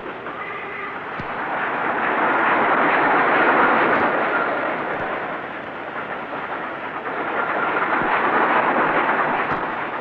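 Steam express train running through a station: a rushing noise that builds to a peak a few seconds in, dips, and swells again near the end.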